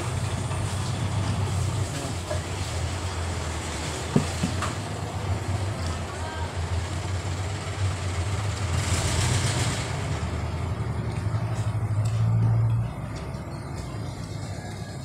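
A motor vehicle engine running steadily with a low hum, which cuts off about thirteen seconds in; a short hiss sounds about nine seconds in.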